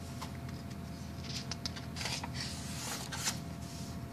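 A paper page of a picture book being turned by hand: a short papery rustle with a few light clicks, starting about a second in and lasting about two seconds.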